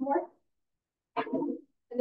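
Two short bursts of a person's voice, one at the start and one about a second in, with dead silence between them.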